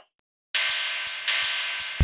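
SOMA Pulsar-23 analogue drum machine playing a synthesized electric ride cymbal: two hissy, metallic strikes with a steady ring, the first about half a second in and the second about 1.3 s in, each decaying slowly.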